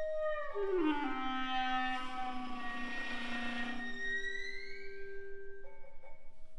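Contemporary chamber ensemble of clarinet and strings playing held notes: about half a second in the tones slide down together in pitch, then hold, and a high tone glides upward near the end.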